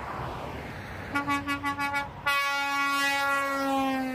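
Semi-truck's air horn: about six short toots in quick succession, then one long blast held for nearly two seconds, its pitch dropping slightly near the end as the truck passes close by.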